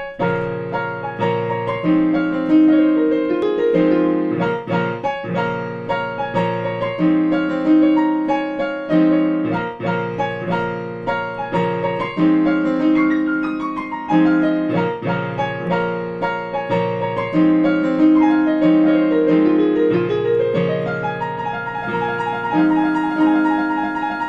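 Digital piano played with both hands: repeated chords in the lower register under a melody line, with runs of descending notes now and then.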